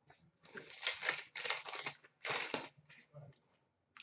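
A trading card pack wrapper being torn open and crinkled, in three short bursts of rustling starting about half a second in.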